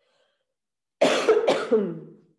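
A woman coughing: two quick coughs about half a second apart, starting about halfway through after a moment of silence.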